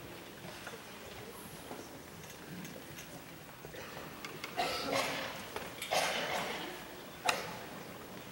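Concert hall room noise between pieces, with a few short rustling noises from the band and audience settling a little over halfway through and one sharp click near the end.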